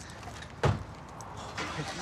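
A single solid thump of a car door being shut, about two-thirds of a second in, over low background noise, followed near the end by a rising swell of noise.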